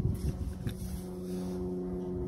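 Wind buffeting the microphone, with a steady engine hum setting in under a second in and holding level.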